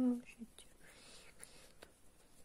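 A woman's voice trailing off at the very start, followed by a short soft whisper and a faint click near the end; otherwise quiet hand work.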